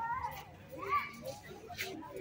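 Faint background voices of people talking, heard as two short phrases over a low outdoor murmur.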